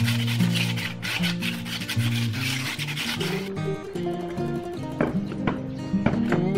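Background music over a dry scraping rub of a hand smoothing the rim of a cement flower pot; the rubbing stops a little past halfway, leaving the music alone.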